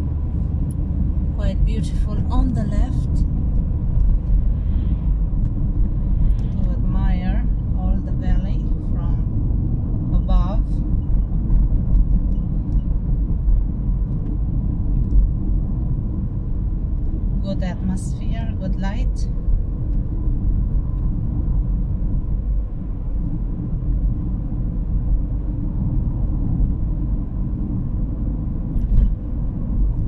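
Steady low road and engine rumble heard inside a moving car's cabin while it drives along a winding road.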